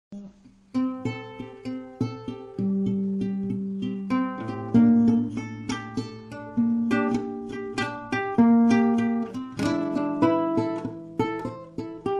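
Acoustic guitar playing the instrumental intro of a song, picked notes and chords that each ring and fade, starting a little under a second in.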